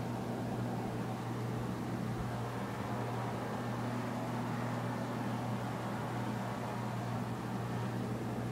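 A steady low hum with a faint even hiss behind it, unchanging throughout.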